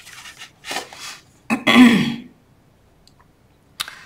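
A woman coughing and clearing her throat in a few short bursts, the loudest about a second and a half in.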